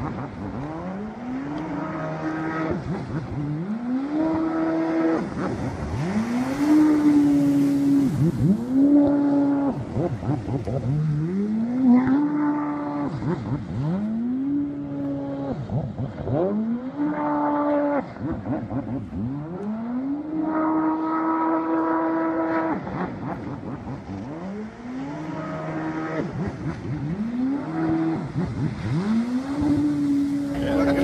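A high-revving vehicle engine accelerating again and again, about a dozen times. Each time the pitch climbs quickly, levels off at the same high note for a moment, then falls back.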